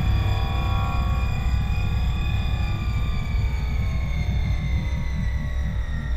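Dark, eerie film-score soundtrack: a deep throbbing drone under a high held tone that slowly falls in pitch from about halfway through.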